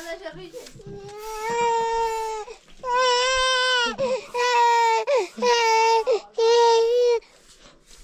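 A baby crying: five loud, drawn-out wails of about a second each, starting about a second in.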